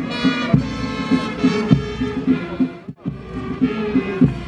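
Marching band music, sustained pitched notes over a steady drumbeat a little under two beats a second, briefly dipping about three seconds in.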